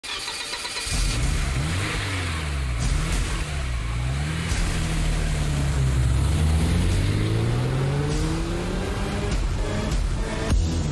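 Car engine revving and accelerating: its pitch rises and falls a few times, then climbs steadily for about five seconds before breaking off near the end.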